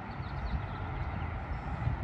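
Steady low rumble of outdoor background noise, with no distinct strikes or other events.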